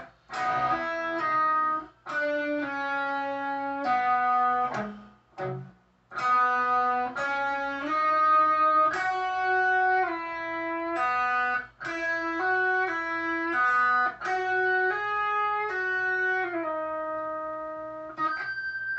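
Electric guitar playing a solo melody: phrases of sustained notes joined by slides, with brief pauses about 2, 5 and 12 seconds in.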